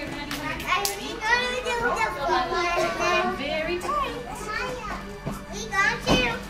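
Several young children chattering and calling out at once, high-pitched voices overlapping throughout.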